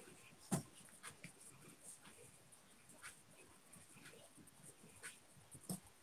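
Near silence: room tone with a few faint, short taps, the clearest about half a second in.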